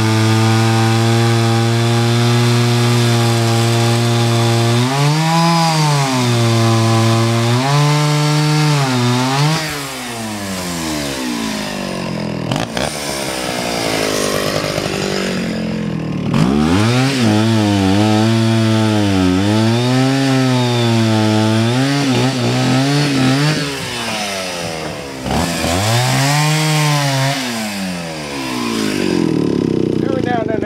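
Chainsaw cutting firewood rounds from a hickory log, running steadily at first, then its engine pitch rising and falling again and again as it bogs in the cut and frees up. The log cuts hard and the chain is not very sharp. The pitch drops away briefly twice around the middle.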